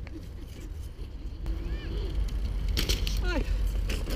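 Steady low wind rumble on the microphone, with children's voices calling out twice and a short cry of "ai" near the end.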